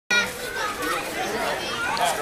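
Children's voices calling out and chattering, with the loudest call right at the start.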